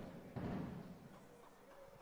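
Two faint, dull low thumps, one at the very start and another about half a second in.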